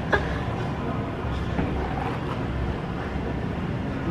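Steady low rumble of outdoor background noise, with one short click just after the start.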